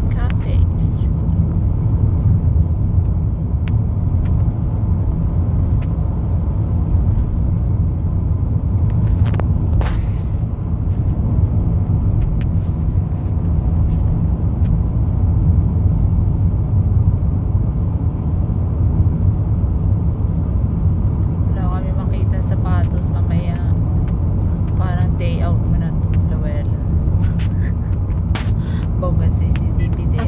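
Steady low road and engine noise inside a moving car's cabin, with faint talk in the last third.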